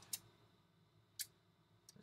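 Near silence with a few faint, short clicks, the clearest a little over a second in: light handling of cardboard trading-card boxes.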